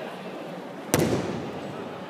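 A judoka thrown onto the tatami mat lands once with a sharp breakfall slap about a second in, the bang dying away in the hall's echo.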